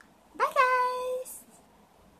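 A young woman's short, high-pitched drawn-out vocal sound, rising and then held steady for under a second, a playful goodbye.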